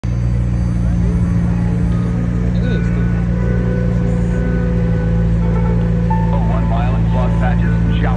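A McLaren supercar's engine idling with a steady low drone. Voices come in over it in the second half.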